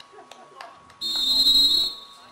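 Referee's whistle: one steady blast of just under a second, starting about halfway through, signalling the penalty kick to be taken.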